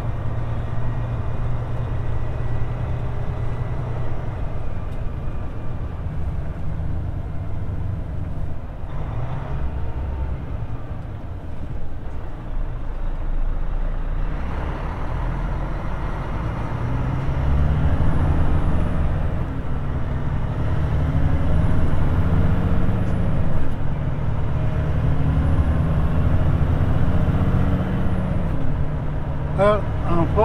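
Road train's diesel engine running on the move, with heavy road and tyre noise, heard from a camera mounted outside the truck. The engine and road noise grow louder about halfway through.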